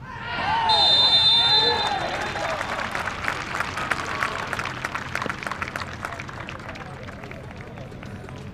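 Several young footballers shouting and yelling in celebration of a goal, loudest about a second in, with a high steady whistle-like tone for a second or two. Scattered hand clapping follows and fades away.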